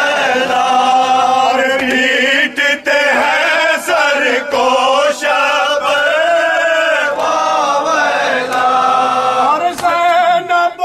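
A group of men chanting a nauha (Shia lament) together, a lead voice carried on a microphone, in long held notes that waver in pitch.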